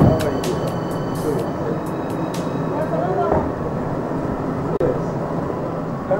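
Indistinct voices, with short calls and exclamations, over a steady noisy background. A brief knock comes right at the start.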